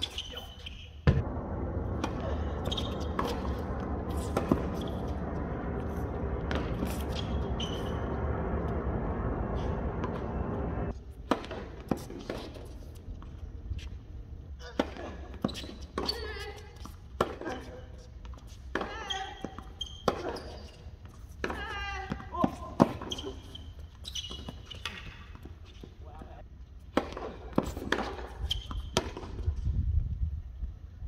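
Tennis balls struck by rackets and bouncing on a hard court during a baseline rally, a sharp pop every second or so. For about the first ten seconds a steady drone runs under the hits, then stops abruptly.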